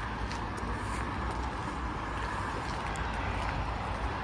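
Steady outdoor city ambience: a low, even hum of road traffic from the street below.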